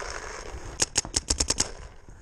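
Paintball marker firing a rapid string of about seven sharp shots in under a second, starting about a second in.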